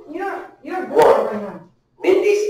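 A group of voices calling out together in two loud phrases, with a sharp click about a second in.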